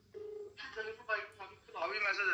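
Smartphone on speakerphone playing a ringback tone, a steady low buzz-tone in a double ring that stops about half a second in. A voice then comes over the call.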